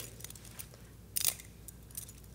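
Butterfly knife (balisong) being flipped by hand: a few light metallic clicks of the handles and blade, with a quick cluster of clicks a little over a second in.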